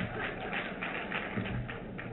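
Audience laughter and clapping dying away after a joke, thinning to a few scattered hand claps, with a couple of low thuds in the second half.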